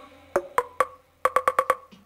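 Hollow wooden percussion knocked at one pitch, like a wood block: three spaced strikes, then a quick run of five about a second in.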